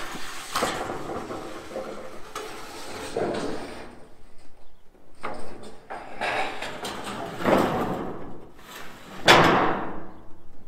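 Corrugated steel roofing sheet being slid, lifted and handled over wooden purlins: the thin metal scrapes and rattles in a series of irregular knocks, with the loudest clatter about nine seconds in as the sheet is laid onto the frame.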